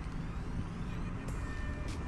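Outdoor ambience of distant road traffic, a steady low rumble, picked up by a smartphone's microphone. A faint, thin, steady high tone comes in about a second and a half in.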